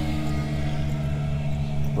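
Golf cart running as it drives along, a steady low motor drone with a faint even pulsing underneath.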